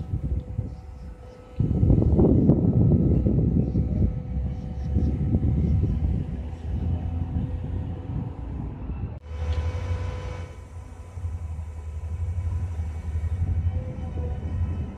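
A Terex mobile crane's diesel engine running with a steady low rumble while it holds a steel beam on its hook; the rumble is loudest for a couple of seconds near the start.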